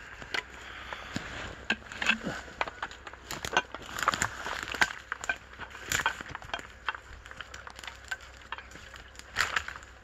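Footsteps through brushy forest undergrowth, with twigs snapping and crackling underfoot in irregular clicks and rustles.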